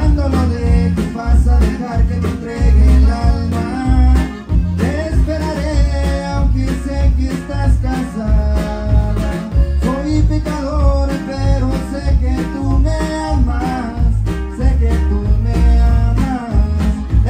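Live Tejano conjunto band playing: button accordion carrying the melody over acoustic guitar, electric bass and drums keeping a steady beat, with sung vocals.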